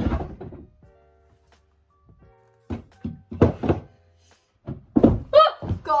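Wooden knocks and thuds as furniture is shifted under a wooden workbench: one loud thud at the start, a cluster of four about three seconds in and another near the end. It ends with a startled cry.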